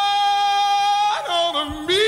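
A male pop singer's voice holding one long, steady high note over band accompaniment. The note breaks off about a second in, and a lower sung phrase with vibrato starts near the end.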